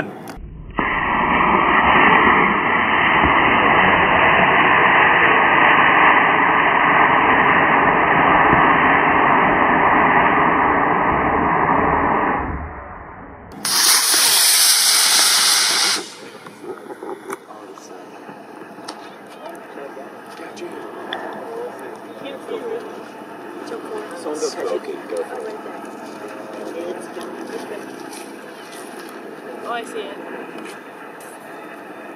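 Estes C6-3 black-powder model rocket motor firing at liftoff. It is heard first as a loud, dull rushing noise lasting about twelve seconds, then as a sharper rushing hiss for about two seconds that stops abruptly.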